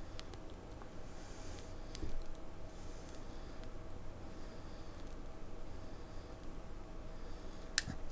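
Faint puffs and soft lip clicks of someone drawing on a tobacco pipe to light it under a lighter's soft flame, over a faint steady hum, with a sharper click near the end.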